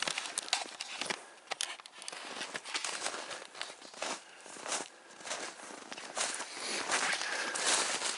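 Footsteps crunching through snow at a walking pace, mixed with the scrape and snap of thin brush and twigs against clothing.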